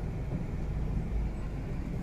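Steady low rumble of a car running, heard from inside its cabin.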